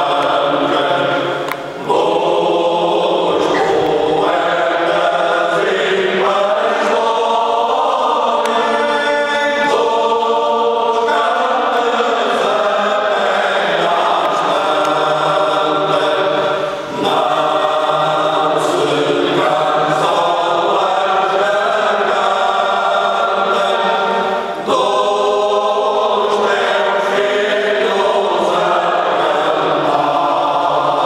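A men's choir singing Alentejo cante unaccompanied, many voices holding long sustained phrases together. There are short breaks between phrases about two seconds in, around seventeen seconds in and near twenty-five seconds in.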